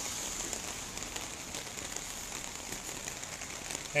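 Steady rain with fine pattering, mixed with floodwater running along a flooded street.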